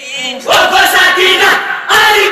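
A group of singers chanting a Bengali matam jari, a Muharram lament, together in chorus. The voices are softer at first and come in loudly about half a second in.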